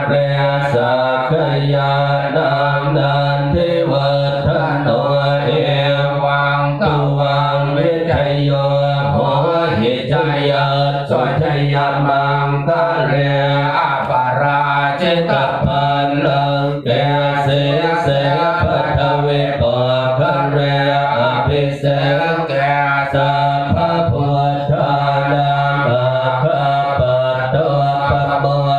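Thai Buddhist monks chanting in Pali in unison: many male voices reciting steadily on one low held tone, without pause.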